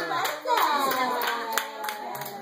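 Several people clapping their hands together in a steady beat, about three claps a second, with voices over the clapping.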